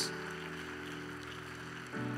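A soft keyboard chord held steady as background music, moving to a new chord near the end.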